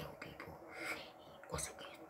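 A child making quiet, breathy, whisper-like mouth sounds into a fist held against his mouth.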